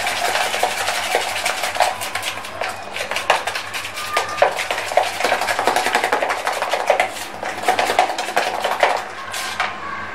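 Spoon stirring and scraping thick gram-flour (besan) batter in a plastic bowl: a fast, busy run of scrapes and clicks that eases off near the end.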